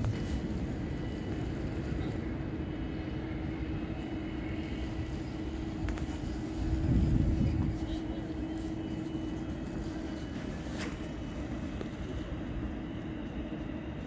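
Outdoor city background noise: a steady hum with a constant low rumble, swelling louder for about a second around seven seconds in. The hum stops about ten and a half seconds in, just before a sharp click.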